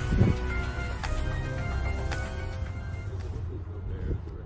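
Background music with long held notes, fading out near the end.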